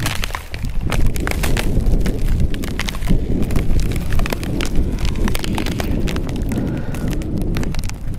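Boots crunching in footsteps over frozen gravel and mud with thin ice, many short irregular crunches, over a steady low rumble.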